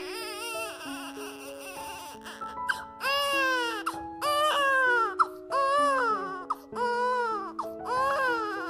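A baby crying in repeated wails, about one a second, getting louder about three seconds in, over soft background music with long held notes.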